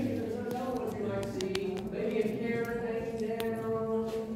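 A voice holding long, steady notes without words, shifting pitch a few times, with a few sharp clicks.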